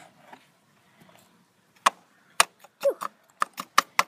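A quick run of sharp plastic clicks and taps, about nine of them starting about halfway through, as a plastic measuring spoon knocks against a small plastic toy toilet bowl while scooping baking soda.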